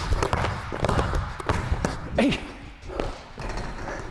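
Basketball dribbled and bounced on a hardwood gym floor, with sneaker footfalls and landings: a run of quick, sharp thuds.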